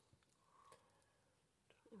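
Near silence: room tone, with a couple of faint clicks.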